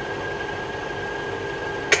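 Steady background hiss and hum with two faint steady tones, unchanging throughout.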